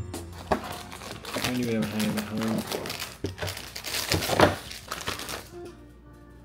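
Crinkling and rustling of a snack box and its plastic inner bag being opened and handled, with sharp crackles, loudest about four and a half seconds in, stopping shortly before the end.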